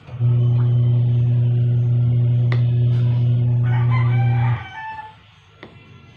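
A loud, steady low hum, one held note with overtones, runs for about four seconds and cuts off abruptly. A rooster crows over the last second of it.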